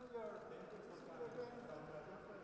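Men's voices exchanging greetings, talking over one another, with the clack of hard-soled shoes on a polished stone floor.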